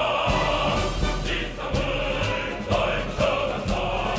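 A choir singing a Korean song over instrumental accompaniment, with a steady beat of about two strikes a second.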